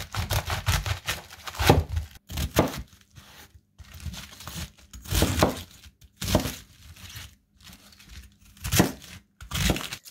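Chef's knife (Samura Damascus) cutting through a raw head of white cabbage against a cutting board: a series of crisp, crunching cuts at an uneven pace, with short pauses between.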